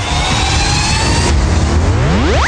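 An engine revving: a rising whine that breaks off partway through, then dips and starts climbing steeply again near the end, over a deep low rumble.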